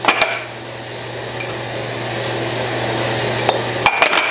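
Seasoning being worked into egg-roll filling in a stainless steel mixing bowl: a steady scraping noise that stops suddenly just before the end, with a few sharp clinks against the bowl.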